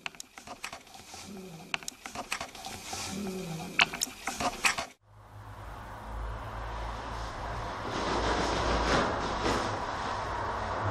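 Scattered light knocks and clicks in an otherwise quiet room for about five seconds. Then the sound cuts off suddenly and is replaced by a steady low hum under a hiss that slowly grows louder.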